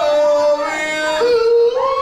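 A man singing long held notes into a microphone, live. The pitch steps down at the start and again about a second in, then slides back up.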